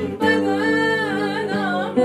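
A woman singing a melody whose pitch bends and slides, accompanied by a man playing an acoustic guitar.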